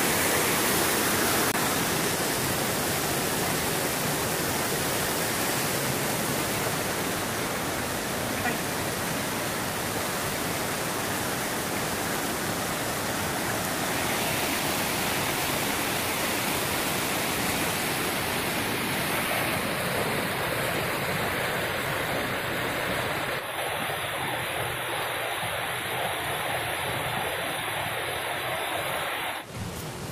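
Steady rush of river water tumbling over rocks in small rapids, an even hiss with no pauses; it drops off abruptly near the end.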